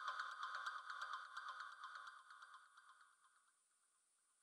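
Faint steady electronic tones with a regular ticking pulse, fading out about two seconds in and leaving silence.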